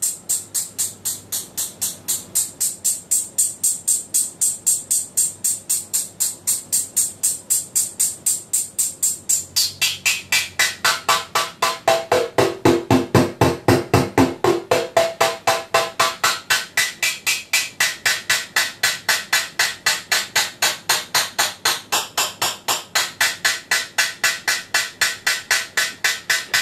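Synthesized analog hi-hat from a Mutable Instruments Plaits Eurorack module, sounding in a steady stream of hits, several a second. It starts thin and bright, and about ten seconds in its tone turns lower and fuller, with a ringing pitch for a few seconds, as its timbre knobs are turned.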